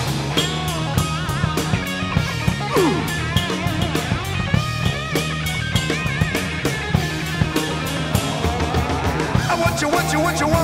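Rock band studio recording in an instrumental stretch: electric guitar playing held notes with wide vibrato, sliding down in pitch about three seconds in, over bass guitar and a drum kit.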